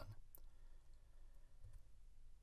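Near silence: faint room tone with one short, faint click about a third of a second in.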